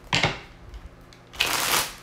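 A deck of reading cards being shuffled by hand in two bursts: a short riffle just after the start, and a longer one about one and a half seconds in.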